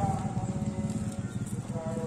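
A motorcycle engine running nearby, a steady rapid low putter with faint steady tones above it.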